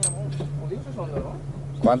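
Boat engine idling with a steady low hum, under faint talk; a sharp click right at the start.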